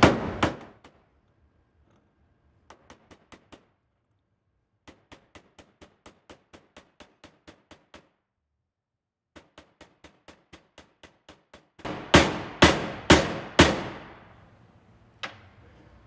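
Copper-faced mallet striking a steel drift to drive a part of an Atlas Copco MD dryer gearbox down into its housing by hand, the field 'hammer method'. Runs of light taps at about five a second, broken by short pauses, then four heavy ringing blows about twelve seconds in and one more near the end.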